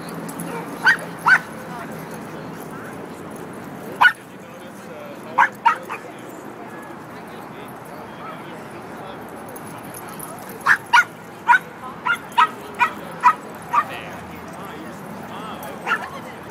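A small dog barking in short, sharp, high yaps: two about a second in, a few more around four to six seconds, then a quick run of about eight barks in the last third, and one more at the end.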